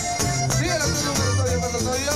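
Live norteño-style music without vocals: a button accordion plays the melody over strummed guitars and a steady bass beat.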